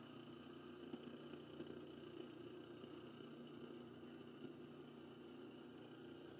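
Near silence with a faint steady electrical hum, broken by a few light handling knocks.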